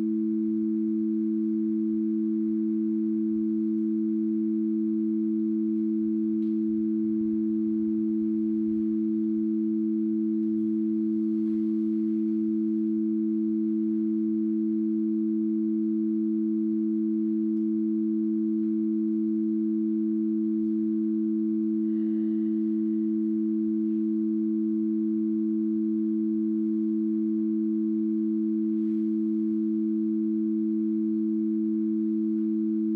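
Two steady pure electronic tones, about a fifth apart, held without a break at an even level. A fainter, higher tone grows in about two-thirds of the way through.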